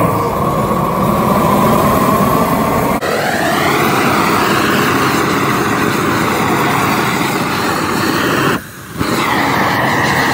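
Propane tiger torch burning at full blast, a loud steady rush of flame, with a brief half-second drop about a second before the end.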